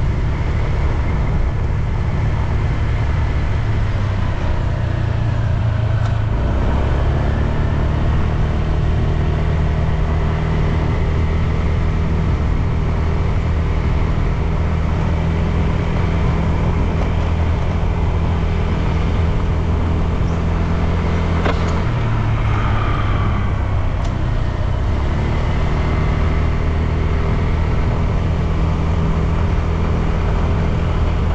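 Engine of a moving road vehicle running steadily under road and wind noise; its note shifts about six seconds in and again around twenty-two seconds in.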